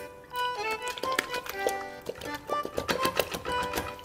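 Light background music playing over a series of sharp, irregular taps and knocks. These come from a knife's corner cracking open the underside of a bafun (short-spined) sea urchin's shell, then from the urchin being knocked in a bowl of salt water.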